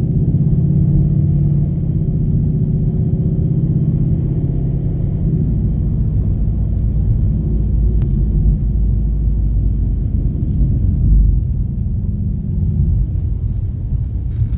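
Ford Mustang GT's V8 engine and tyres heard from inside the car while driving: a steady droning hum for the first few seconds, fading into a low rumble of engine and road noise.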